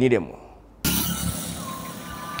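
About a second in, the sound cuts suddenly to steady outdoor road noise from traffic passing on a roadside street.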